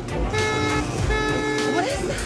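A ride-on party train's horn sounds two short blasts, each about half a second long, as the train arrives.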